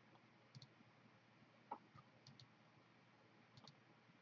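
A few faint computer mouse clicks over near silence, most of them a quick double tick of press and release, spaced about a second apart.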